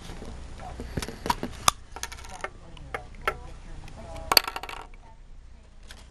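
A Polaroid print coater and a freshly developed print being handled: a run of small, sharp clicks and taps, about half a dozen, with the loudest near the start and again about four seconds in.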